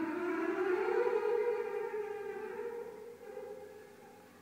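A single long-held instrumental note in a free improvisation. It starts abruptly, slides upward in pitch over about the first second, then holds and slowly fades away.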